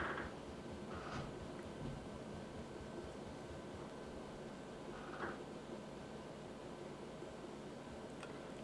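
Quiet room with a faint steady hiss and a few soft, faint puffs and breaths as a person draws on a cigar and lets the smoke out.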